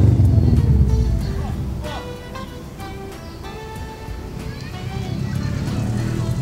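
A car driving by on the street, its engine a low rumble that fades in the middle and builds again near the end, with background music.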